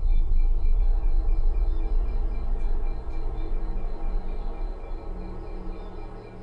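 A loud low rumble that eases off somewhat in the second half, with faint steady high tones above it.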